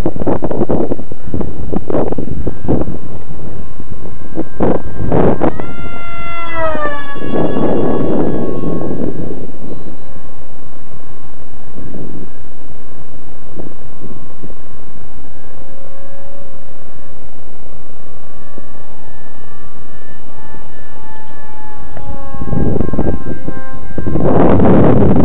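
Electric pusher motor and 6x5.5 APC propeller of an RC foam jet whining as the plane flies. The whine drops sharply in pitch about six seconds in, a Doppler drop as it passes at speed, then holds a steadier, wavering whine. Wind buffets the microphone in loud gusts at the start, in the middle and near the end.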